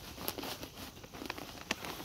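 Perlite being poured from its plastic bag into a black plastic nursery pot: a light rustle of the granules, with a few sharp ticks, the sharpest near the end.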